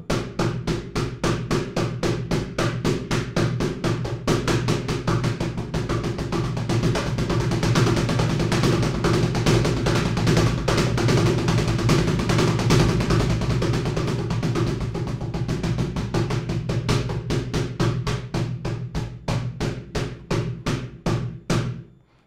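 Cajon played with bare hands near the top edge of its wooden front plate: a continuous, even stream of quick single and double strokes repeating the paradiddle sticking (right-left-right-right, left-right-left-left). It grows a little louder through the middle and eases off towards the end.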